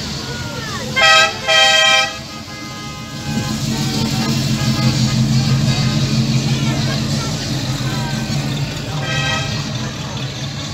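A car horn toots twice in quick succession, then a classic American car's engine rumbles loudly as it drives slowly past and fades, with a third, fainter horn toot near the end.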